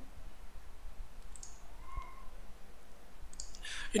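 Computer mouse clicking faintly a few times, scattered through a quiet pause.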